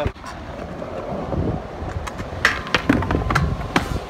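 Stunt scooter wheels rolling on concrete, a steady gritty rumble, with several sharp knocks and clicks in the second half.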